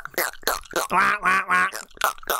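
Speech only: a man talking quickly and animatedly.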